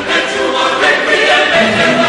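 Choral music: a choir singing long held notes.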